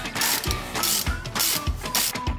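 Ratchet wrench with a hex bit turning a brake caliper bolt, its pawl clicking in quick runs, over background music with a steady beat.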